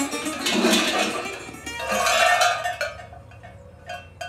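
A cluster of large metal sheep bells worn on a costume belt clanking and ringing as they are handled and adjusted, settling to a few scattered clinks near the end. Music with guitar runs underneath in the first part.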